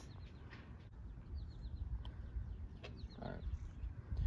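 Faint bird chirps, a few short falling calls, over a low outdoor rumble with a couple of soft clicks.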